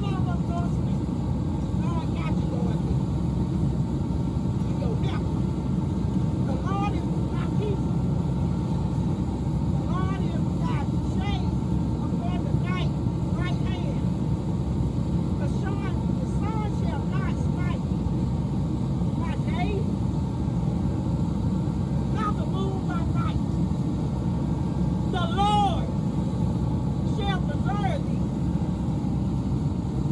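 Faint, distant speech from a woman over a steady low rumble. The rumble is the loudest thing throughout and does not change.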